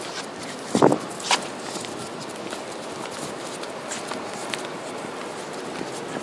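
Footsteps on a concrete path over a steady outdoor background hiss, with one brief louder sound just under a second in.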